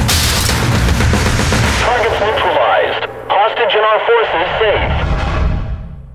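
Action-film sound effects of an armed room entry: a sudden loud burst at the start, then gunfire and men shouting over tense music, fading out near the end.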